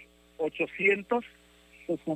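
A man's voice over a telephone line, a few short words with pauses between them, over a steady electrical hum.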